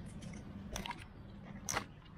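A strap being pulled tight around a bike frame on a case's frame mount: handling rustles and a couple of short clicks, the loudest near the end.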